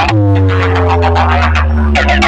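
Loud DJ remix music played through a large village DJ sound-system box with a row of horn speakers. A steady deep bass note sits under a held synth tone that slides slowly downward.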